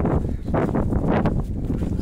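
Strong gusty wind buffeting the microphone, a loud, uneven low rumble.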